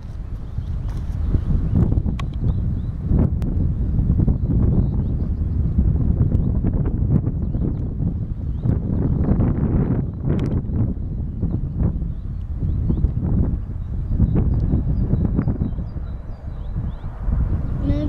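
Wind buffeting the microphone: a low, gusting rumble that swells and dips every second or two, with occasional small pops.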